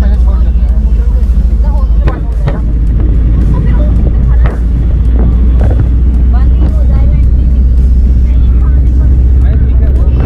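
Loud, steady low rumble from riding in an open-sided four-wheeler auto: engine and road noise with wind on the microphone. Indistinct voices come through over it.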